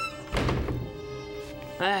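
A single dull thud about half a second in, over soft background music; a man's short exclamation follows near the end.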